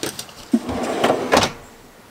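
Wooden drawer box being pushed into its cabinet on drawer tracks: a few clicks, then a rough scraping slide with two sharp knocks that dies away after about a second and a half. It is a tight fit and hard to get in.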